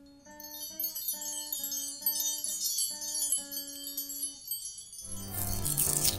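Credits music: a slow melody of separate chiming notes over a high tinkling shimmer. About five seconds in it gives way to a bright, noisy swell and fuller music with a bass line.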